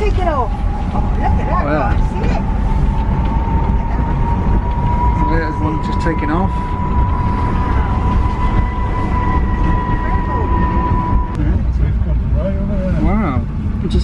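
Heathrow Terminal 5 pod, a small battery-electric automated vehicle, running along its guideway: a steady low rumble with an electric whine whose pitch rises slowly, cutting off about eleven seconds in.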